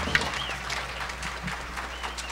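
Audience applauding: steady clapping from a crowd, with a short high whistle or whoop near the start.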